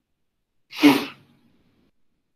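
A person sneezing once, a single sharp, loud burst that fades within about half a second.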